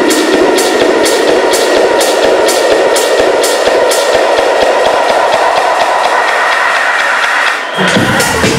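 Live techno in a breakdown with the kick and bass taken out: high percussive ticks about twice a second over a sweep that rises in pitch. It cuts out for a moment near the end, and the kick and bass drop back in.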